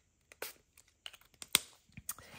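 A few light clicks and taps from handling small plastic spray bottles of ink, the sharpest click about one and a half seconds in.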